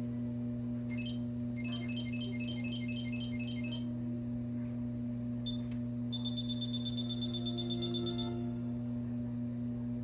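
Steady low electrical hum from a television playing a VHS tape, with faint high electronic beeps: a quick run of about five a second a couple of seconds in, then a held high tone from about six to eight seconds in.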